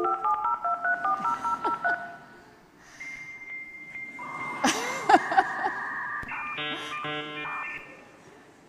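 Dial-up modem connecting. A quick run of touch-tone dialing comes first, then a steady high answer tone, then the screeching, warbling handshake noise, which stops just before the end.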